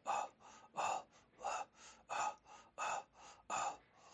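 Rhythmic breathy exhalations in a steady pulse, a strong breath about every 0.7 s alternating with a weaker one, in the style of a zikr breath-chant that keeps time under an a cappella ilahi between sung lines.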